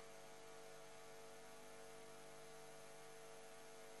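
Near silence with a faint, steady hum of a few fixed tones.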